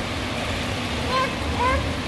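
Indoor pool ambience: a steady wash of water noise and echoing room hum, with a baby's two short, high, rising vocalizations, one about halfway through and one near the end.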